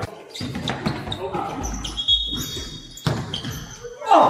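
Basketball game in a large gym: a basketball bouncing on the court and players' voices, echoing in the hall, with a short high squeak about two seconds in.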